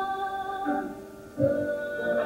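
A young woman singing solo on stage, holding a long note. It fades briefly about a second in, then a new, lower note starts.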